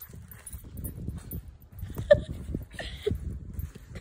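Soft, irregular thuds and rustling of someone climbing onto a trampoline and bouncing on its mat, with a sharp click about two seconds in and a few brief voice sounds.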